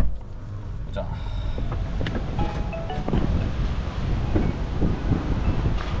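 Wind buffeting the microphone of a handheld camera carried outdoors, a steady low rumble mixed with street noise.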